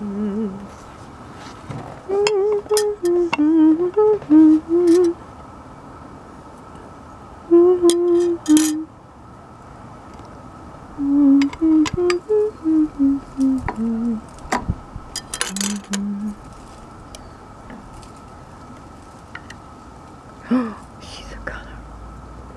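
A person humming a slow wandering tune in short phrases, each made of a few held notes, with pauses between the phrases.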